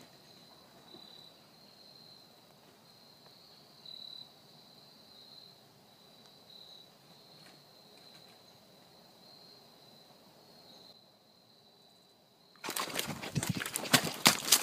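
A faint, steady high insect buzz that swells and eases slightly. Near the end it gives way to a sudden loud burst of rustling and knocking: the phone is handled and swung away fast.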